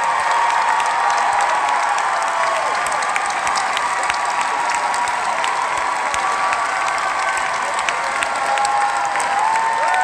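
Large audience applauding steadily throughout, with cheers and shouts rising over the clapping.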